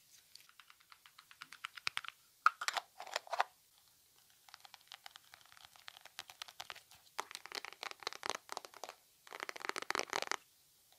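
Quick runs of light clicks and taps, with short pauses between the runs, made by hand on a small object for ASMR.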